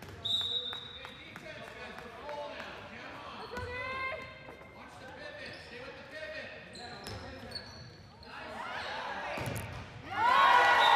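A handball bouncing on a gymnasium's hardwood floor during play, with sneakers squeaking briefly and players' voices calling out.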